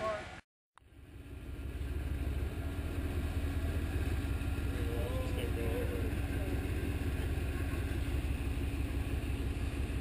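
Rock-crawler buggy's engine running steadily, with no revving, after a brief gap of silence under a second in.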